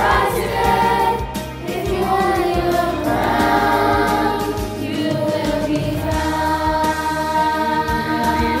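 Middle school chorus singing together in sustained, held notes, the separately recorded voices mixed into one virtual choir.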